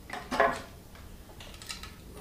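Small metal tools clicking and clinking as they are handled at an engine block, with one sharp clink about half a second in and a few lighter ticks later.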